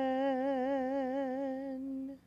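A woman's unaccompanied solo voice holding one long sung note with vibrato, fading away near the end: part of a sung prayer.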